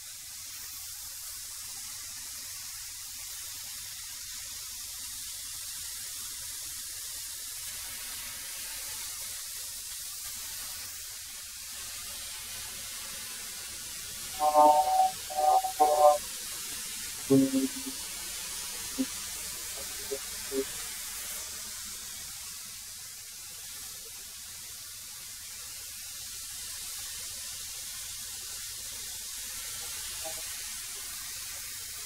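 13-inch benchtop thickness planer running with boards feeding through it: a steady, even rushing machine noise. The planer is taking light passes that catch only the high spots on rough walnut and oak boards.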